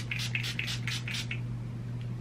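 Pump mist bottle of facial setting spray sprayed in quick pumps, about five short hisses a second, stopping after about seven pumps.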